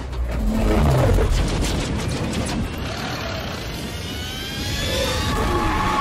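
Film sound design of a street-racing car: a deep, heavy engine rumble with a rushing whoosh, mixed with music, and rising and falling tones in the second half.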